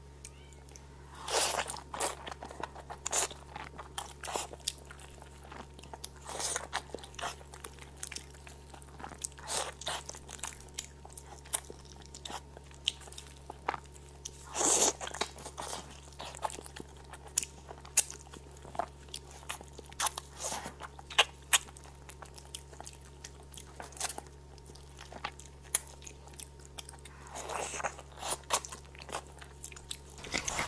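Close-miked biting and chewing of a goat leg's skin and meat: irregular short crunches and clicks, with a few louder bites.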